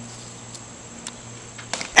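Quiet outdoor background with a steady low hum and a few faint clicks. Near the end comes a brief sharp knock: the pitched plastic blitzball hitting the strike-zone target on a strikeout.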